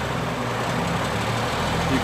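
Diesel engine of a Mack Granite CV713 dump truck running at a steady idle.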